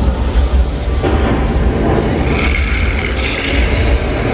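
A loud, steady low rumble with a noisy hiss over it, and a higher hiss joining about two seconds in.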